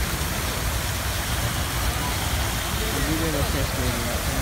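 Fountain water jets spraying and splashing back into the pool, a steady rushing noise with a low rumble. A faint voice is heard about three seconds in.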